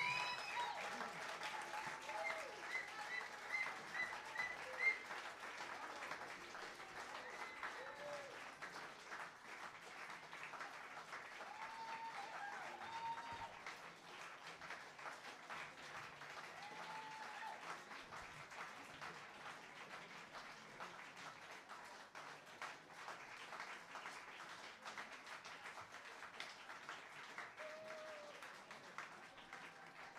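Audience applauding steadily, with a few voices calling out over the clapping, the applause slowly dying away toward the end.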